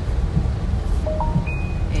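Steady low rumble inside a car driving along a flooded street. About a second in, a short chime of three brief rising tones sounds once.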